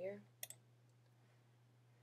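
A single click on a computer's pointing-device button, heard as two sharp ticks close together about half a second in, over a faint steady low hum.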